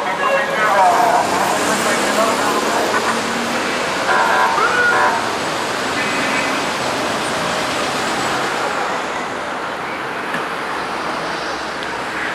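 Steady street traffic noise with snatches of people's voices from the crowd, briefly louder near the start and about four and six seconds in.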